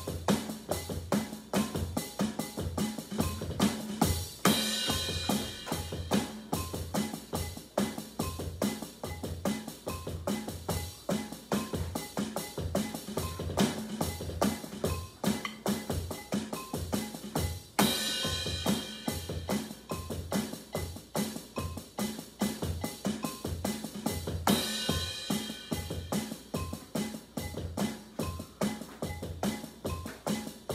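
A drum kit played with sticks in a steady, loud groove of even repeating bass-drum and snare strikes. Three times a longer splashy ring rises over the beat, about four seconds in, midway and near the end.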